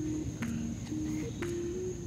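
Soft background music: a simple melody of low held notes stepping up and down every few tenths of a second. Under it runs a steady high-pitched insect drone, as of crickets in a summer garden.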